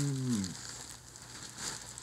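Faint rustling and crinkling of the clear plastic wrapping around a faux-fur coat as it is handled. A drawn-out voice falling in pitch trails off about half a second in.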